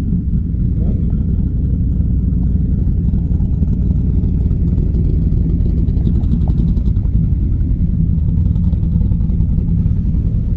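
Loud, steady low rumble of hot rod engines running at low speed as a T-bucket roadster and a rat-rod pickup creep past.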